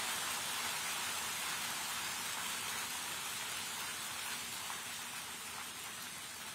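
Audience applauding in a hall, steady, starting to die down near the end.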